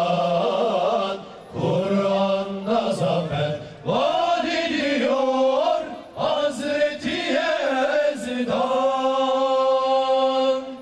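Male voices of a Mehter band chanting in unison: long held phrases broken by short pauses for breath, with notes that slide at the phrase ends.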